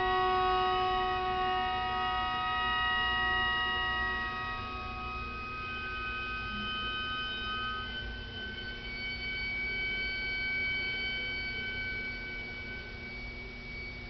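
Viola quintet holding long, soft chords, the notes changing slowly every few seconds and fading toward the end.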